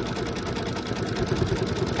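Brother Essence embroidery machine stitching out a monogram, its needle running in a steady, fast, even rhythm of strokes.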